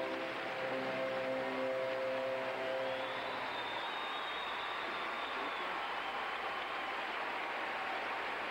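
Orchestral skating music with string instruments plays its final held notes and stops about three and a half seconds in, giving way to arena crowd applause and cheering, with a long high whistle in the middle of it.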